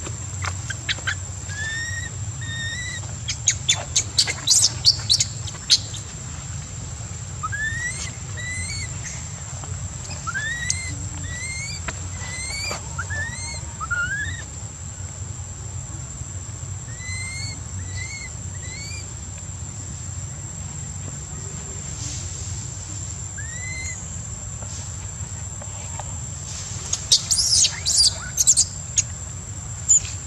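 Infant long-tailed macaque crying: short rising squeaky calls in clusters, breaking into loud shrill screams twice, about four seconds in and again near the end as an adult macaque reaches for it.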